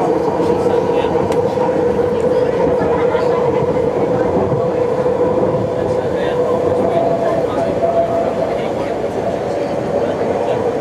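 BART train running at speed, heard from inside the car: steady rumbling wheel-on-rail noise with a constant tonal hum. A second, slightly higher tone rises in briefly about two-thirds of the way through.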